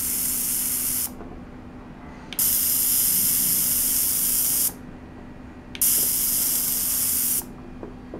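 Ultrasonic cleaner running a tank of water, its cavitation making a loud high-pitched hiss that switches on and off. The hiss cuts off about a second in, comes back for about two seconds, then again for about a second and a half. A faint steady low hum continues under it throughout.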